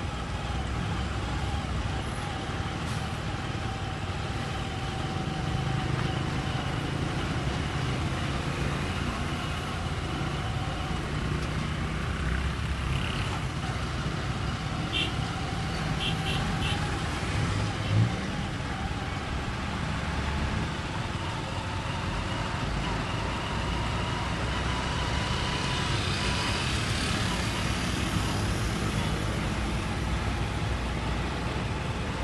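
Street traffic noise: vehicle engines running and passing in a steady rumble. Partway through come a few short high chirps, then a single brief thump.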